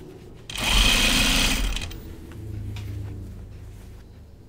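Juki sewing machine stitching in one quick burst of about a second, run to secure the layers before sewing them in. A lower, quieter hum follows and fades.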